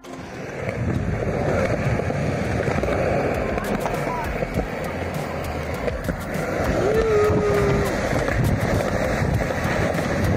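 Skateboard wheels rolling over concrete: a steady, rough rolling noise that builds over the first second and holds.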